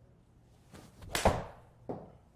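A golf iron swishing down and striking a ball off a hitting mat, a sharp crack just over a second in, followed by a second, quieter knock under a second later.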